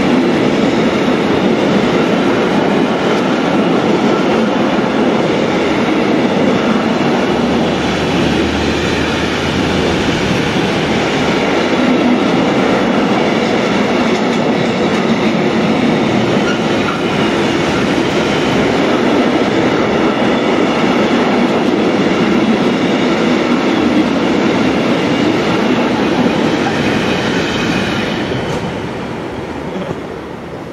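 Intermodal container freight train passing close by, its wagons' wheels rolling over the rails in a loud, steady rumble. The sound fades near the end as the last wagons go by.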